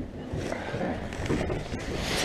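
Quiet, indistinct voices with rustling of clothing against the microphone.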